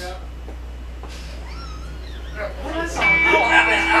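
Men's voices and laughter in a small rehearsal room, quiet at first and livelier in the second half. About three seconds in, a steady held tone comes in under the talk and laughter.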